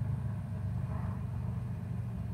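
A steady low hum with no clear rhythm or change.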